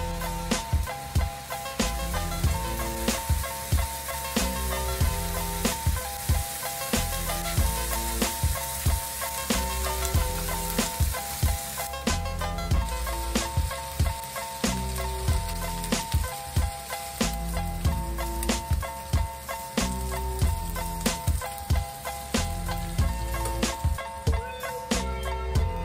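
Cubed beef steak bites sizzling as they fry in a skillet, over background music with a steady beat; the sizzling stops suddenly about halfway through, leaving the music.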